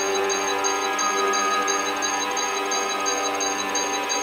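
Intro of a drum and bass track: sustained synthesizer chords holding steady, with no drums or bass yet.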